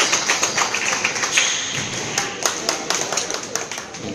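Many sharp, irregular taps and knocks, several a second, echoing in a squash hall: squash balls being struck and hitting the walls.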